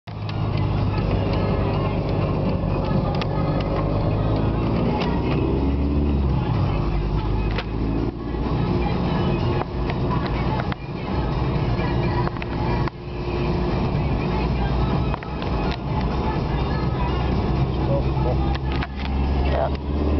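Inside a moving car: a steady engine and road rumble, with music and a voice playing over it.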